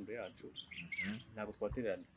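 A man talking, with a bird chirping briefly in the background about a second in.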